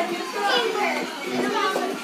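Children's voices while they play.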